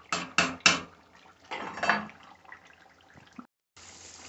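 A spatula knocking three times against a cast-iron Dutch oven and scraping through simmering carnitas. After a cut near the end, a steady sizzle of pork frying in its rendered fat.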